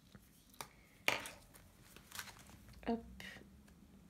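Pages and plastic sheet protectors of a ring-binder budget planner being flipped over: a few short crinkling rustles, the loudest about a second in.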